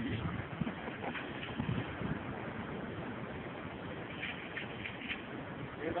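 Steady outdoor noise of wind and sea below a fishing pier, with faint distant voices.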